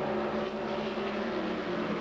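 USAC Silver Crown open-wheel race car engines running together in a steady drone, the pitch easing slowly down as the field slows under a caution.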